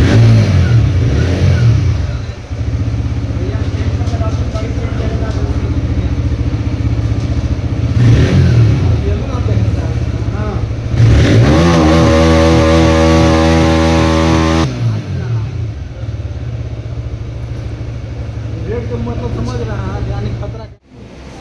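TVS Raider 125's single-cylinder four-stroke engine idling, then revved about eleven seconds in and held at high revs for about four seconds before dropping back to idle.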